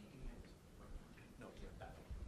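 Near silence: classroom room tone, with a faint, distant voice late on.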